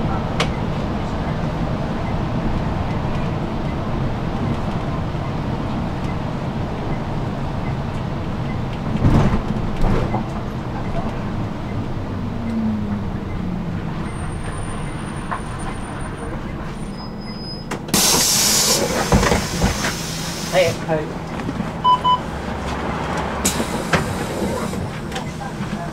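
Inside a moving city bus: steady engine and road rumble with two sharp knocks, then the engine note falls as the bus slows. A loud hiss of compressed air follows as the bus pulls up at a stop, with a short beep and a second brief hiss near the end.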